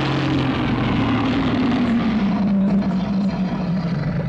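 Godzilla roar sound effect: one long, harsh roar that slowly falls in pitch.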